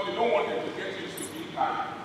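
Speech: a man's voice in short phrases with pauses between.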